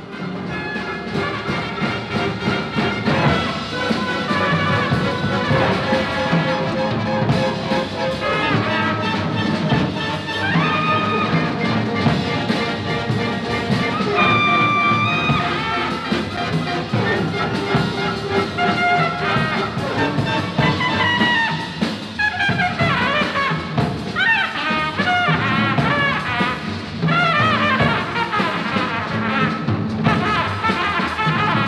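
Trumpet leading a small jazz ensemble with double bass and drums in an atonal, third-stream style piece. The trumpet holds one long high note about halfway through and plays quick rising and falling runs in the second half.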